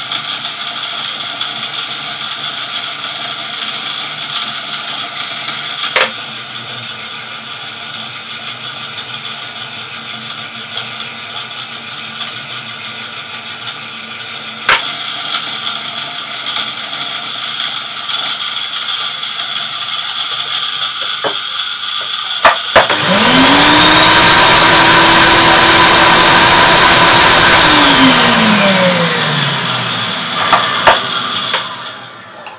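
Pro-Ject VC-S record-cleaning machine: the platter drive runs with a steady whine of several tones and a few sharp clicks. This running noise has grown worse after about 60 records. About 23 seconds in, the vacuum motor switches on with a loud rush of air and a whine that rises and holds steady, then falls away as it winds down near the end.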